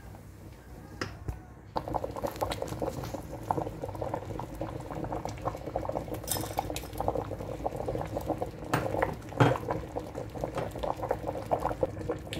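Pot of spinach and scent-leaf pepper soup bubbling at the boil, starting about two seconds in and going on steadily, with a few sharp knocks against the pot.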